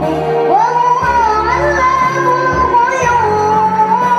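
A young female voice singing a melodious devotional song with musical accompaniment, holding long notes that slide up and down over a steady low backing.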